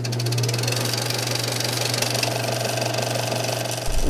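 A mechanical transition sound effect: a steady low hum under a fast, even clatter, with a faint higher tone joining about halfway through. It cuts off suddenly just before the end.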